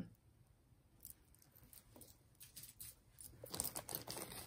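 Faint light clicks of jewelry being handled, then near the end a louder crinkling rustle of a clear plastic bag full of jewelry as a hand reaches into it.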